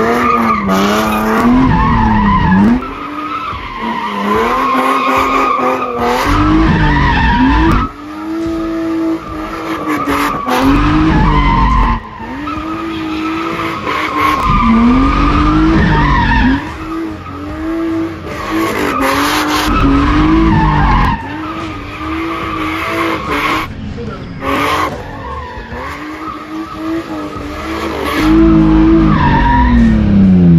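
BMW E36 coupe drift car sliding with its engine revving high and falling back again and again, tyres skidding on asphalt. The sound changes abruptly every few seconds.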